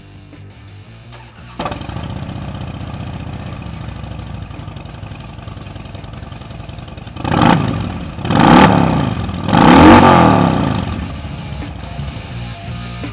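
2007 Harley-Davidson Softail's 96 cubic inch V-twin, fitted with Screamin' Eagle slip-on mufflers and an open-air intake, starting suddenly about a second and a half in and idling. Near the middle it is revved three times in quick succession, the last two the loudest, each rising and falling in pitch, before settling back to idle.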